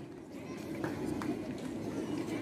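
Faint background chatter of people standing around, with a couple of light clicks about a second in.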